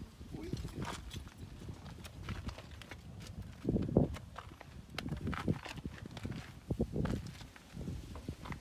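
Footsteps on a gravelly dirt path, irregular steps with a louder thud about four seconds in.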